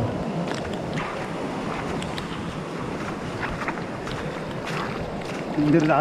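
Steady rushing of shallow water running through wet grass, with scattered faint splashes and rustles.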